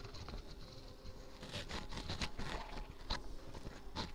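Small DC motor running faintly off a homemade lead-acid cell, discharging the cell after its forming charge. A faint steady hum runs under irregular clicks and crackles.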